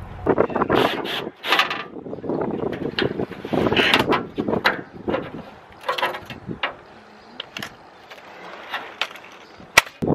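Irregular knocks, clicks and scrapes of work under a car with hand tools and a cordless drill/driver, with a sharp click near the end.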